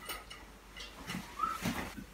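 Faint metallic clinks and knocks as the lid is handled on a stainless-steel all-in-one brewing kettle, with one short rising squeak a little past the middle.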